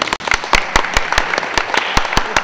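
Audience clapping, many sharp individual claps in a dense, irregular run.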